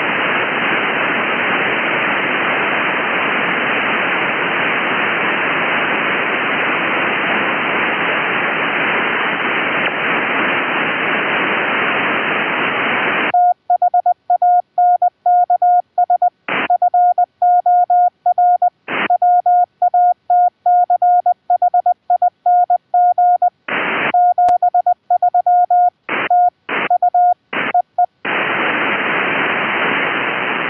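Elecraft K3 transceiver audio: steady receiver hiss cut off sharply near the top end, then about halfway through Morse code keyed at 20 wpm as a clean tone of about 700 Hz, spelling 'thanks for watching 73', with short bursts of hiss in a few of the gaps. The hiss returns near the end.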